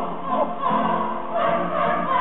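A group of children singing together as a choir.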